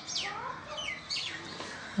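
Birds calling in the background: a series of short chirps, each sliding down in pitch, mostly in the first second.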